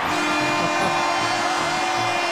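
Arena goal horn sounding one long, steady note over a cheering crowd, signalling a goal for the home team.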